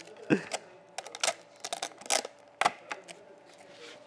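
Hard plastic clicks and knocks, about a dozen in quick irregular succession, as the clear plastic water tank and lid of a small USB mini evaporative air cooler are handled and fitted.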